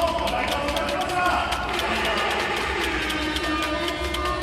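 Voices talking in a large space, over a steady low hum.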